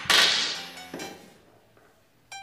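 A broom swung down and slapping onto the floor: a sharp swishing whack that fades over about a second, with a smaller knock about a second in.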